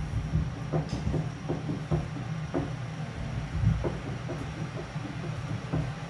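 Steady low room hum with a few soft, scattered knocks and thumps.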